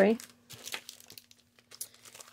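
Clear plastic zip-lock bags crinkling faintly as they are handled, a few scattered soft crackles.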